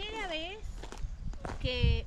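Footsteps on a stony mountain trail, scattered short steps between two short bits of a voice.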